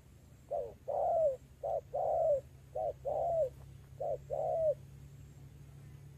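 Spotted dove cooing: four two-part coos in a row, each a short note followed by a longer one that falls away at the end.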